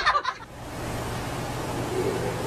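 A person's cry breaks off in the first moment. Then comes steady background hiss with a low hum.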